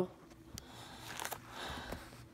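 Faint handling noise as a glossy paper LEGO instruction booklet is picked up: a few light clicks and soft rustling that grows a little louder toward the end.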